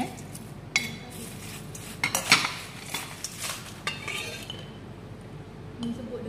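Metal serving spoon scraping and clinking against a stainless steel mixing bowl as crisp fried banana chips are tossed with fried shallots, curry leaves and dried chillies. The clinks come irregularly, loudest in a cluster about two seconds in.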